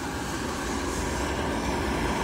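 Steady low rumble of a rooftop Addison DHU unit running with its heating section on.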